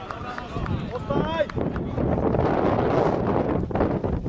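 Voices shouting on an outdoor football pitch, with one rising-and-falling shout about a second in, followed by a jumble of several voices, and wind buffeting the microphone.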